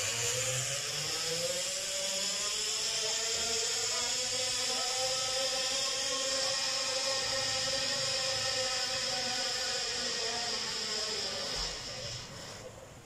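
Zip line trolley rolling along the cable: a steady whine that rises in pitch over the first second or two as the rider sets off, holds, and fades away near the end.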